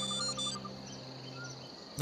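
Background music dying away over the first second and a half, leaving a steady, faint high chirring of crickets.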